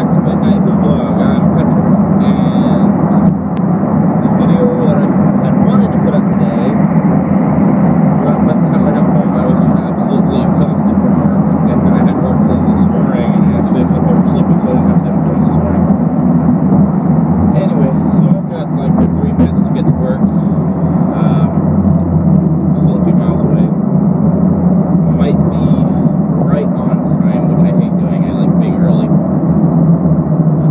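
Steady, loud road and engine noise inside the cabin of a car moving at highway speed, a constant low rumble with no change in pitch.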